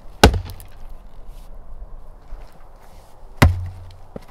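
Two axe strikes into wood, about three seconds apart, each a sharp crack with a short low thud after it, and a few lighter knocks of wood between.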